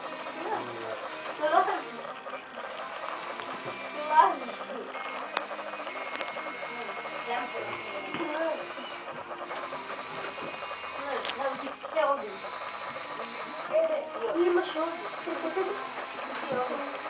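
Indistinct voices talking in the background of a room, with two short, loud, rising vocal exclamations near the start.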